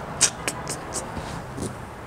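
A few short, soft rustles and clicks of cotton drawstring bags being handled and moved about on a bed, mostly in the first second, over a faint steady low hum.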